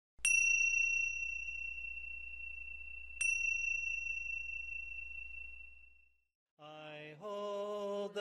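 A small bell struck twice, about three seconds apart, each strike ringing in one clear high tone that slowly fades, over a low hum. Near the end, singing of a chant begins.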